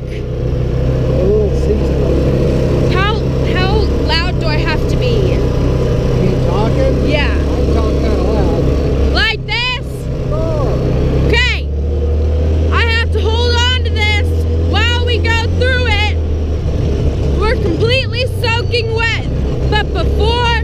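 Side-by-side UTV engine running under way at a steady low drone, dipping briefly twice near the middle.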